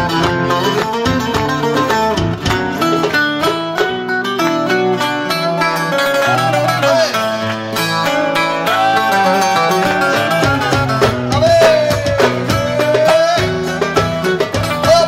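Traditional Greek instrumental music: a plucked long-necked lute and acoustic guitar with a hand-played frame drum keeping the beat, and a sustained melody line that slides between notes in the middle and near the end.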